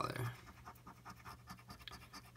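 A penny scraping the coating off a scratch-off lottery ticket: faint, uneven scratching strokes.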